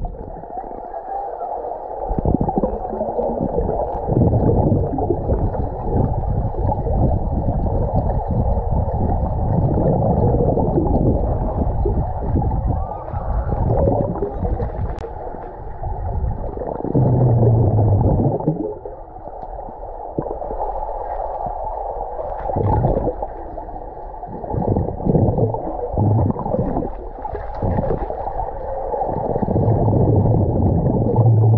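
Underwater sound in a swimming pool heard through a submerged camera: a loud, muffled rumbling and churning of water and bubbles as swimmers move and jump, rising and falling in level. A brief low steady tone comes through about seventeen seconds in and again at the very end.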